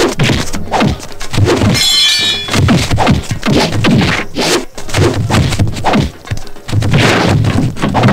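Film fight sound effects: a rapid run of punch and body-blow whacks and thuds over background music, with a brief ringing crash about two seconds in.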